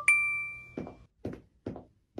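A single bright bell-like ding that rings on and fades over about a second, followed by a run of soft steady knocks about half a second apart, like footsteps on a hard floor.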